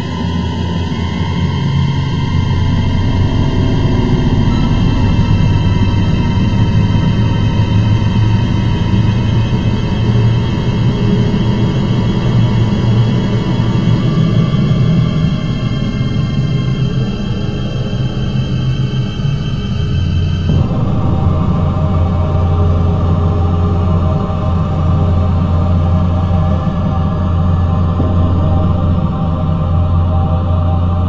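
Background music with sustained tones; its texture changes about two-thirds of the way through.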